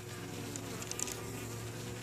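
Honeybees buzzing at the hive entrance: a steady hum of a few bees flying in and out.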